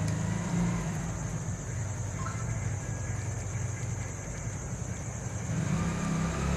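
Steady low background hum with a faint hiss, and a brief faint tone about two seconds in.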